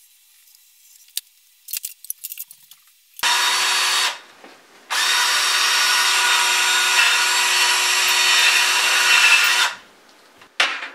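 Handheld power drill boring into a wall: a short run of about a second, a brief pause, then about five seconds of steady running at one pitch. The bit is not getting through, which the driller takes for solid concrete behind the wall. A few faint clicks of handling come before it.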